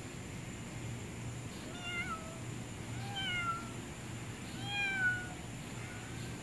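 A domestic cat meowing three times, each call about half a second long and falling in pitch, the last one the loudest.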